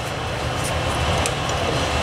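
Furnace running in the basement, a steady low rumble, with a few faint clicks of the ratchet and extension being handled.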